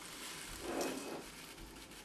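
Faint rustling of a shiny foil tea pouch being handled and opened, slightly louder about half a second to a second in.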